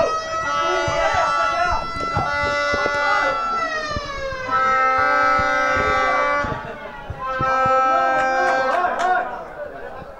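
Spectators chanting in long, drawn-out sung notes, several voices at once. The chant comes in three long phrases, and the pitch slides down about four seconds in. A few sharp knocks sound under it.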